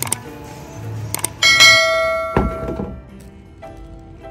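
Subscribe-button sound effect: sharp mouse clicks, then a bright bell chime about a second and a half in that rings out and fades over about a second and a half. Soft background music plays underneath.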